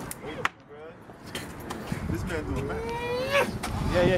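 Murmured voices of a small group over passing car traffic, with a sharp click about half a second in. Near the end, one man's voice rises in a long drawn-out sound.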